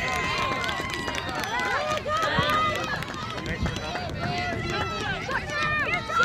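Many voices of players and spectators calling and cheering across an open soccer field, overlapping, with no words close enough to make out, just after a goal.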